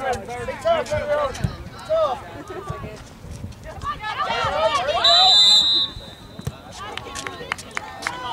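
A referee's whistle blown once, one steady high blast of about half a second, about five seconds in, over shouting voices from players and spectators.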